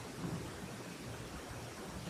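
Faint room tone: a steady hiss with a low, uneven rumble and no distinct event.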